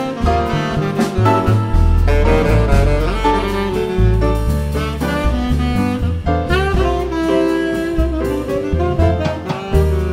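Live Cuban jazz: a tenor saxophone plays a running solo line over double bass and drum kit.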